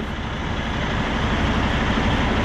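Heavy diesel engine running steadily at idle: a low, even rumble with a hiss above it.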